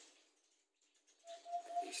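A faint pause in which a bird gives a short, steady single-pitched note just over a second in, against quiet open-air background.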